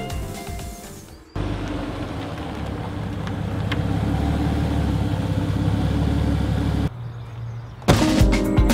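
Alfa Romeo GTV Spider's Busso V6 engine and exhaust running, a steady low note that slowly grows louder for about five seconds before cutting off abruptly.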